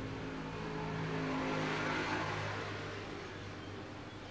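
A motor vehicle's engine passing by, growing louder to a peak about two seconds in and then fading.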